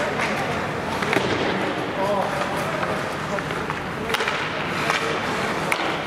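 Ice hockey play: a steady hiss of skates on the ice, with sharp clacks of sticks and puck about a second in, about four seconds in and near the end, and a player's indistinct shout around two seconds in.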